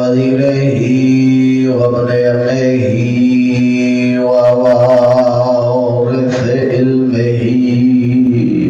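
A man's voice chanting Arabic recitation in long, held melodic notes, sliding between pitches at the ends of phrases, as the opening invocation of a Shia majlis sermon.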